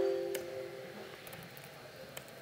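A ringing pitched tone with several overtones fading away over about the first second, followed by a few faint clicks of laptop keys being typed.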